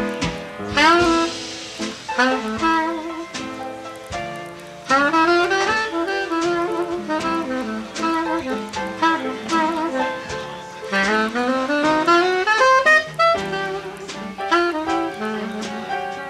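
Live traditional jazz trio: a soprano saxophone plays quick rising runs and phrases over piano and drums.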